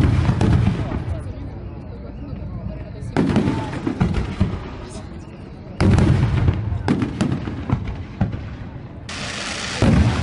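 Aerial fireworks shells bursting: loud booms at the start, about three seconds in, and twice more close together around six and seven seconds, with smaller pops and crackles in between.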